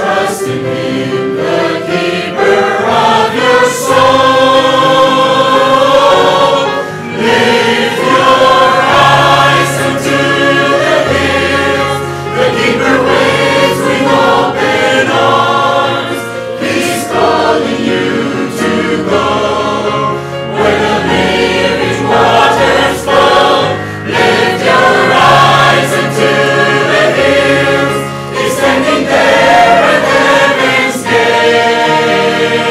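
A mixed choir of young men and women singing a Christian hymn together.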